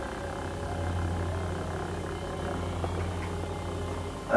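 A steady low hum over constant hiss, with no clear events in it.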